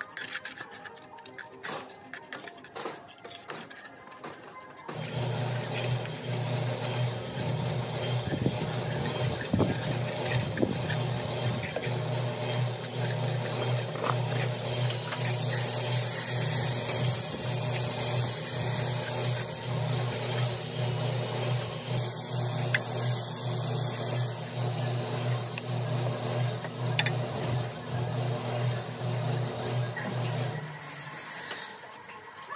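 A steel trowel scraping and tapping on fresh cement render. About five seconds in, a louder steady low motor drone starts and runs on under the scraping.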